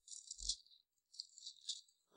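Faint rustle of thin Bible pages being turned, in two brief spells, with a soft thump about half a second in.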